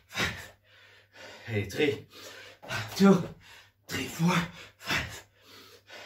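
A man gasping and breathing hard, in loud breaths about once a second, several of them voiced: the exhaustion of a long unbroken set of burpees.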